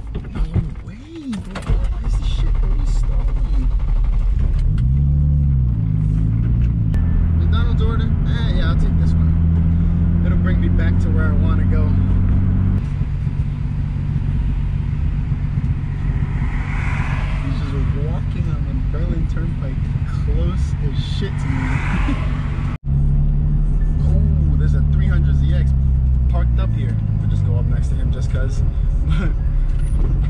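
A turbocharged BMW E30's M52 inline-six heard from inside the cabin. It climbs in pitch as it pulls through a gear about five seconds in, then runs steady at cruise. After an abrupt break it pulls again and settles.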